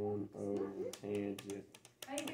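Calculator keys clicking as problem 9 is typed in, several quick presses, under a low male voice talking quietly.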